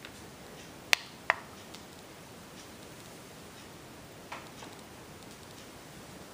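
Sharp switch clicks as the light kit on a Hampton Bay Renwick ceiling fan is switched off, two of them close together about a second in and a softer one later. Under them is the steady quiet sound of the fan running on low speed.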